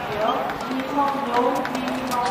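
Voices talking, with a few faint knocks in the background.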